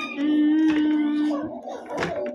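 A young girl's voice humming one steady, level note for just over a second, then softer mouth and voice sounds.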